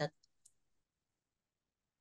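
Near silence between two spoken turns: the last syllable of a word cuts off at the start, then one faint click about half a second in, and the line goes dead quiet.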